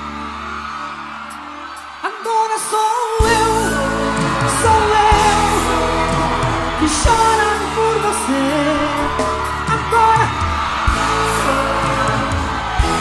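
A held keyboard chord fades out, and about two seconds in a live band song starts: a voice singing over bass and drums.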